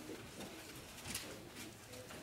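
Faint rustling of paper as the pages of a Bible are turned, with the strongest rustle about a second in, over a low steady hum.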